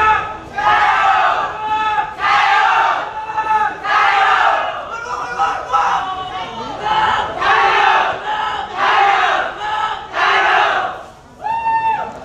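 A team of lion dancers shouting together in unison: a short, loud group shout about once a second, with a longer held call near the end.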